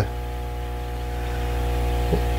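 Steady low electric hum from fish-room aquarium equipment, with a faint hiss, growing slightly louder across the two seconds.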